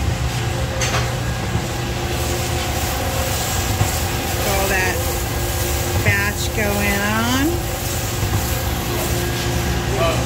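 A 55 lb commercial drum coffee roaster running with a steady mechanical hum near the end of a roast, just before the batch is dropped. Voices are heard briefly about halfway through.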